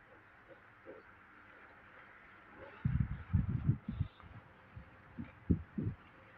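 Faint steady hiss, then a quick run of soft low thumps about three seconds in, and a few more single thumps near the end.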